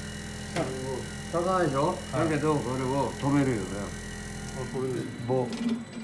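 Experimental water-stirring device running, its tank of water full of small plastic pieces churning with a mechanical clatter over a steady low hum; the hum drops away near the end.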